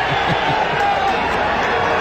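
Several people shouting and whooping excitedly in long drawn-out calls, over a steady hiss.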